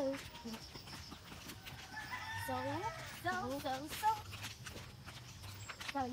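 A rooster crowing, with its main crow about two seconds in and shorter calls after it.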